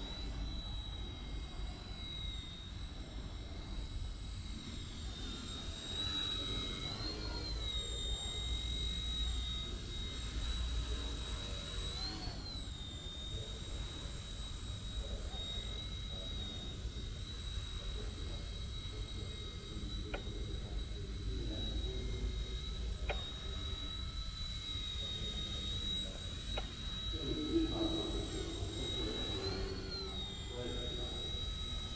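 Eachine E129 micro RC helicopter's motor running with a steady high-pitched whine, the pitch rising briefly three times, about a quarter of the way in, near the middle and near the end.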